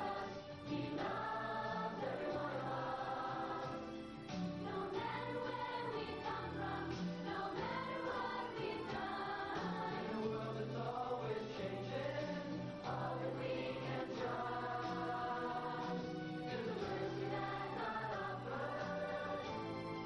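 Large youth choir singing a song together over an instrumental accompaniment with sustained bass notes.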